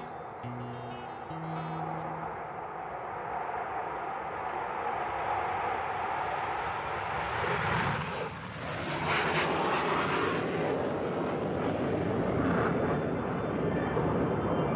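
A few plucked acoustic guitar notes, then a loud, steady, engine-like rushing noise that builds and takes over, with a whooshing sweep about eight seconds in.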